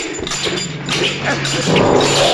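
Several short, high-pitched martial-arts fighting cries in quick succession, over film score music whose low steady notes come in near the end.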